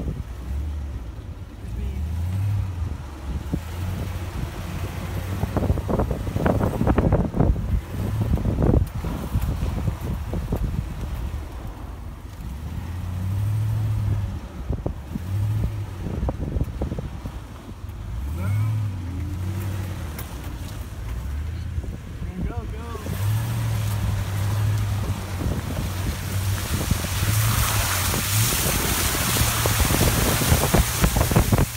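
Pickup truck engine running at crawling speed in four-wheel drive, its revs stepping up and down as it works over a rough sandy wash, with the body jolting over bumps about six to nine seconds in. Wind rushes over the microphone in the last few seconds.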